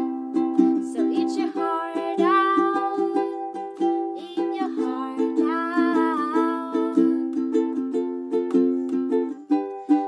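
Acoustic ukulele strummed in a steady rhythm of chords, with a woman's voice singing two long, wavering phrases over it.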